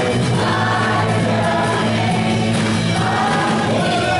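Live worship band of drums, electric bass, guitars and keyboard playing a gospel praise song, with a group of singers singing together.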